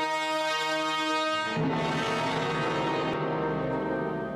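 Symphony orchestra with prominent brass holding a sustained chord. About one and a half seconds in, it moves to a fuller, denser chord with more weight in the bass.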